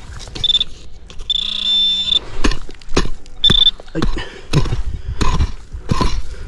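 A metal-detecting pinpointer beeps with a high steady tone while it is probed in a dig hole: a short beep about half a second in, a longer one around a second and a half in, and another short one at about three and a half seconds. From about two and a half seconds on, a pick-mattock chops into dry, stony soil several times with sharp knocks.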